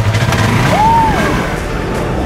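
Polaris RZR side-by-side's engine running as it sets off, its pitch rising and falling once around the middle, under background music.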